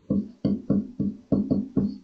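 A brief run of short plucked notes, about four to five a second, each starting sharply and dying away quickly.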